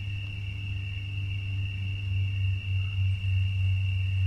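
A steady low hum with a steady high-pitched whine above it, unchanging throughout: the background noise of the talk recording.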